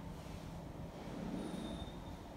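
Low steady background rumble with a faint, brief high-pitched squeal in the second half.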